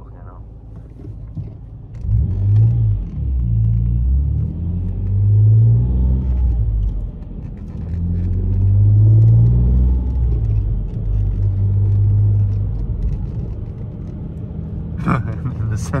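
Ford Mondeo ST220's 3.0 V6, running without catalytic converters, heard from inside the cabin under hard acceleration. The engine note climbs in pitch in three pulls, dropping at each gear change, then holds at a steady cruise and eases off near the end.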